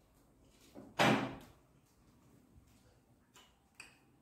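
A single dull knock about a second in, the loudest sound here, followed by two faint clicks near the end.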